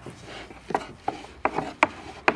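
A long, thin wooden rolling pin rolling pastry dough on a wooden board: a soft rubbing, then about five sharp wooden clacks in the second second as the pin knocks against the board.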